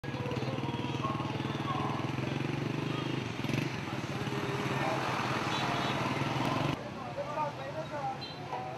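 Busy street sound: an engine running steadily close by, over people's voices and general traffic noise. Near the end it cuts off abruptly to quieter chatter.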